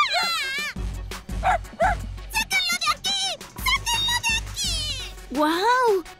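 A cartoon girl's loud wailing cry, then a run of short, very high-pitched yaps from a small dog, over background music.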